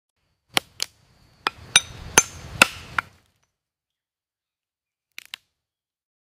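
Stone knocking on a nut against rock as a macaque cracks it open: about seven sharp knocks over two and a half seconds with a rough scraping under the later ones, then two faint clicks near the end.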